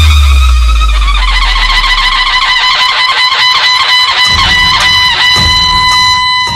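A loud broadcast sound effect laid over a boundary shot: a deep boom that fades over about two seconds beneath a steady, rapidly fluttering high tone, with low rumbling returning after about four seconds, all cutting off abruptly.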